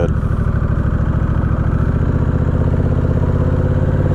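Honda Rebel 1100 DCT's parallel-twin engine running steadily while the bike rolls along at low speed.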